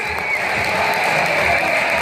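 Audience applauding and cheering, with children's voices in the crowd; a held musical note ends just after the start.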